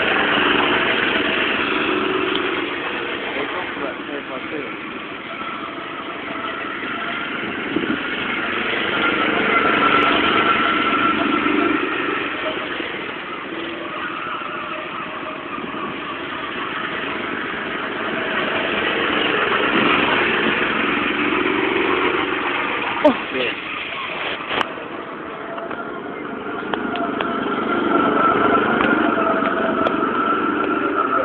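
Small go-kart engines running. Their sound swells and fades every nine or ten seconds, as karts come past and go away again, with a few sharp clicks about three-quarters of the way through.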